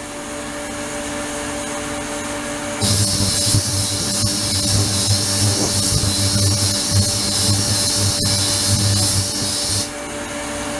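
Ultrasonic cleaning tank running under its control box: a steady hum with two low tones, joined by a loud high hiss from the ultrasonic output that switches on about three seconds in and cuts off near the end, as the controller cycles oscillation on and off.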